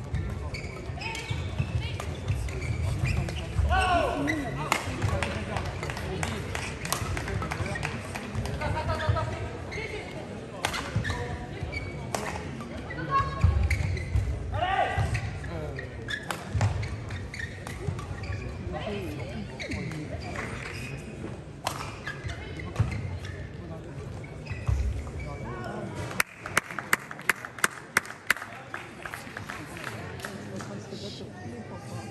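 A badminton rally: racket strikes on the shuttlecock and shoe squeaks on the court floor, with voices in the hall. Near the end the rally has stopped, and a short run of quick hand claps follows.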